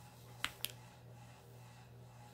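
Two short clicks close together from hands handling the pages of an open paperback picture book, over a faint low steady hum.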